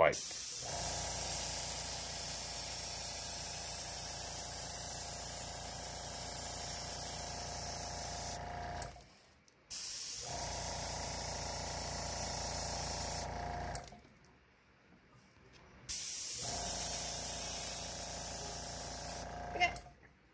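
Airbrush spraying orange paint in three long, steady hissing bursts over the hum of its small airbrush compressor. There is a short gap after the first burst and a gap of about two seconds after the second. Each time the hiss stops, the compressor's hum runs on for about half a second and then cuts out.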